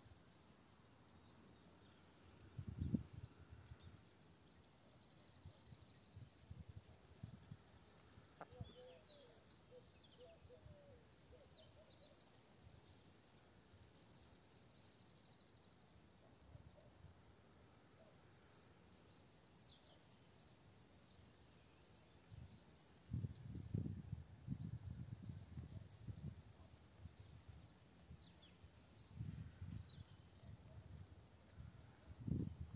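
Insects trilling in high, buzzing bouts of a few seconds that stop and start again, faint against a quiet background. A few low muffled rumbles come in, most strongly a little past two-thirds of the way through.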